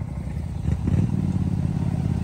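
Can-Am Maverick Sport side-by-side engine running at low speed over a dirt track. A steady engine note comes up about a second in.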